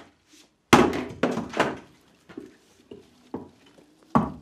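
Hatchet chopping kindling on a wooden chopping block: three sharp knocks about a second in, then a few lighter knocks.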